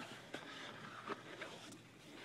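Faint room tone with a few soft ticks and light rustling.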